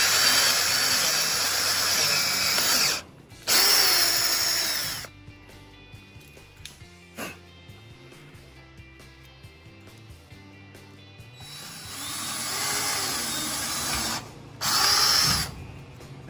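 Cordless drill with a twist bit drilling pilot holes through a wooden cage-frame rail, running in bursts: two in the first five seconds, then after a quieter stretch a rising run from about twelve seconds and a short last burst. Near the end the bit runs on through the wood into the cage's wire mesh.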